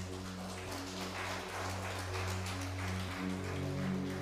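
Soft instrumental background music of held low notes that change slowly, with a faint hiss over it.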